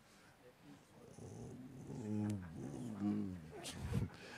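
Faint voices of congregation members calling out answers to the preacher's question, off-microphone. They start about a second in, with two short spoken stretches in the second half.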